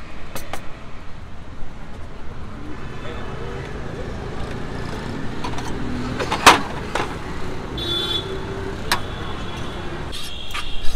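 Road traffic running steadily, with background chatter and a few sharp metal clinks from a serving spoon on plates and a steel tray, the loudest about six and a half seconds in.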